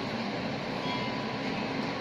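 A wire whisk beating icing by hand in a bowl, a steady, even scraping and swishing of the wires against the bowl.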